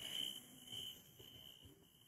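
Faint background hiss with a thin, high-pitched tone that comes and goes.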